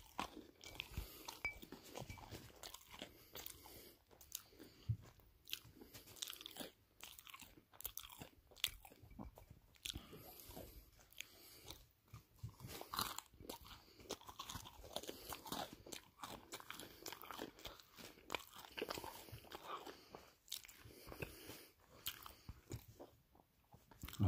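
Close-up eating of crispy pizza: irregular crunchy bites and chewing.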